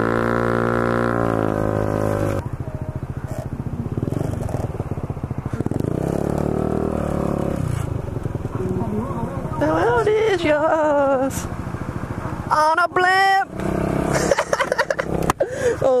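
Honda Ruckus scooter's 49cc four-stroke single-cylinder engine running under the rider: held at a steady pitch for the first couple of seconds, then a rise and fall in pitch around the middle. Voices come in over it during the second half.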